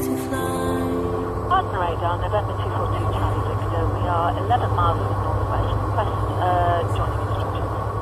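Single-engine light aircraft's propeller engine running with a steady low drone inside the cockpit. Indistinct speech sits over it from about a second and a half in, and music notes end at the very start.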